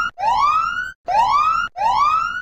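Laser alert from a Radenso RC M paired with an AntiLaser Priority laser jammer, signalling a detected TruSpeed laser gun: a repeating electronic whoop that rises in pitch, three full whoops plus the tail of one, each under a second long with short gaps between.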